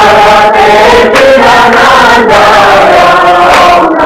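Many voices chanting together in unison, a loud group chant carried on a sung melody.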